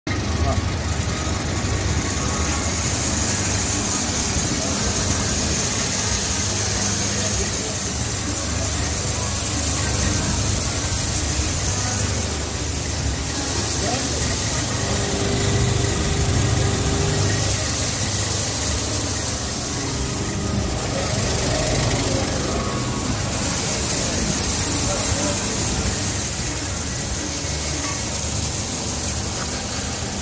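Magnetic destoner running steadily: the electric motor and vibrating screen deck hum while soybeans stream across the deck, with voices in the background.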